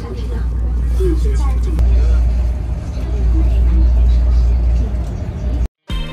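Steady low rumble inside a moving high-speed train's passenger cabin, with indistinct passenger voices over it. It cuts off abruptly just before the end.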